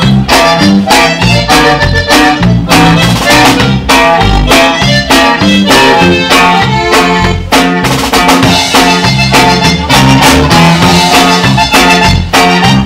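Live conjunto band playing an instrumental passage of a polka: drum kit keeping a quick, steady two-beat rhythm, with a twelve-string bajo sexto strummed and a bass line underneath.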